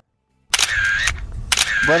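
Two camera shutter sounds about a second apart, each a short burst with a steady tone in it, as two photos are taken.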